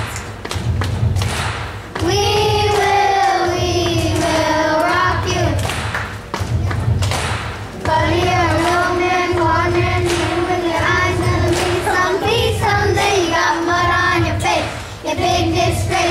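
Singing in held, wavering notes, phrase by phrase with short breaks, over a steady low thumping beat of about one thump every three-quarters of a second.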